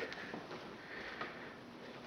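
A man sniffing and breathing in through the nose, faint and close to the microphone.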